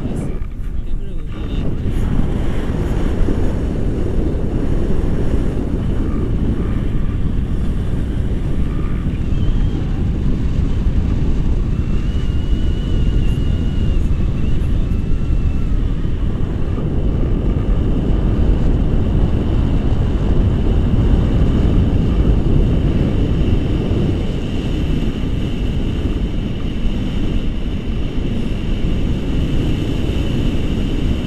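Airflow buffeting a pole-mounted action camera's microphone during a tandem paraglider flight, a loud, steady, low rumbling wind noise. A faint thin high tone runs under it from about halfway through.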